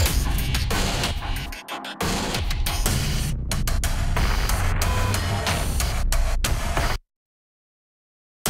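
A Heavyocity Damage cinematic/industrial loop playing back from a software instrument: a dense, noisy electronic texture with heavy bass that starts abruptly, drops out briefly just before two seconds in, and cuts off suddenly about seven seconds in.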